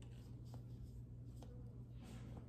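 Faint strokes of a small paintbrush brushing paint onto paper, with two light clicks about a second apart, over a steady low hum.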